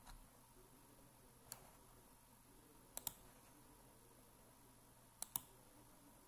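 Faint clicks of a computer mouse and keyboard over quiet room hiss: a single click about a second and a half in, then two quick double clicks, one near the middle and one near the end.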